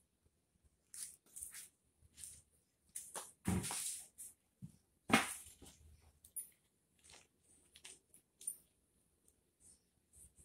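Black plastic nursery pots being handled and potting mix scooped and pressed into a pot by hand: irregular rustling, crunching and scraping, loudest about three and a half and five seconds in.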